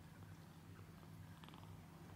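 Ginger Persian kitten purring faintly and steadily while held.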